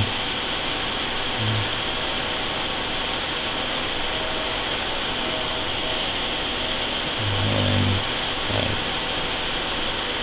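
Steady background hiss, with a man's low hummed 'mm' briefly about a second and a half in and a longer one around seven to eight seconds.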